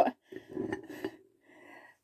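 Quiet handling sounds: a few light taps and clinks as gingerbread biscuits are picked up and moved.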